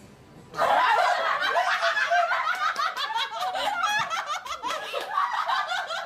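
A group of people bursting into loud, overlapping laughter about half a second in, several voices at once.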